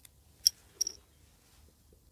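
Two short, sharp clicks with a faint metallic ring, about a third of a second apart: a coin being set down on a concrete floor.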